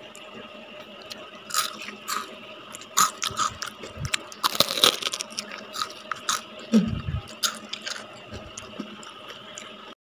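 Crunching and chewing on crisp deep-fried halfbeak (julung-julung) fish head and bones close to the microphone: a run of sharp crackles, densest about halfway through.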